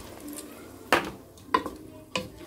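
A plastic bowl knocks against a cooking pot as the last of the blended pepper is emptied into it. One sharp knock comes about a second in, followed by two lighter clinks.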